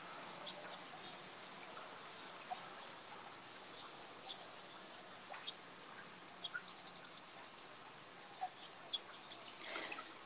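Faint birds chirping in the background over a low steady hiss, with a small cluster of chirps about two thirds of the way in.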